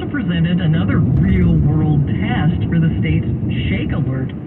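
News radio speech playing in the car, thin-sounding and cut off above the mid treble, over a steady low rumble of road and engine noise from the moving car.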